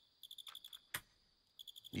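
Faint crickets chirping in short rapid trills, about a dozen pulses a second, as night ambience in an anime soundtrack. One sharp click about a second in, as a shogi piece is set on the board.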